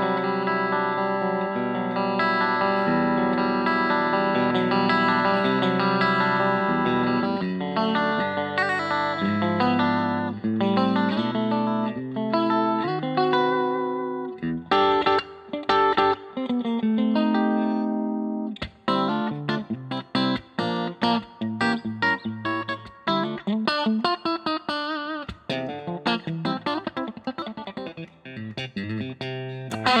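Fender Custom Shop 2018 Limited 1968 Stratocaster electric guitar, played through an amp in pickup position two, where the Texas Special bridge and Fat '50s middle pickups are on together. It starts with held, ringing chords, then moves to shorter picked phrases of single notes and quick chord stabs.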